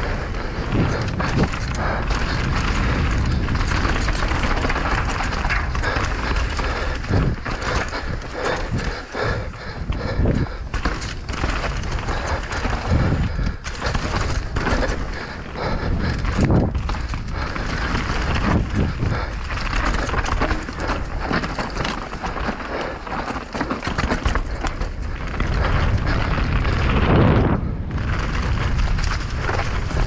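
Downhill mountain bike ridden fast down a rough dirt trail, heard from a bike- or helmet-mounted action camera: continuous wind buffeting on the microphone with tyres running over dirt and a steady run of knocks and rattles from the bike over bumps and roots.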